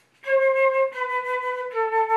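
Concert flute playing three held notes stepping down, C, B, then A, the opening notes of a descending C major scale.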